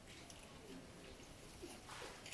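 Near silence: faint room tone, with a brief soft sound near the end.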